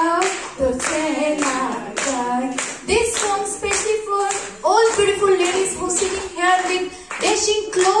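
A woman singing a Hindi film song into a microphone without backing music, while listeners clap along in a steady rhythm.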